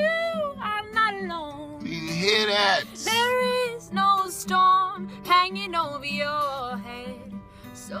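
A woman singing a folk-style song with wavering, sliding sustained notes, accompanied by her own acoustic guitar played steadily underneath, inside a car.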